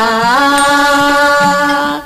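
Singing in a Kannada dollina pada folk song: one long held vocal note, with a slight waver, that stops right at the end.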